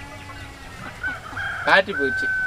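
A chicken calling, with a long steady note starting about a second in, under a man's voice saying "bye".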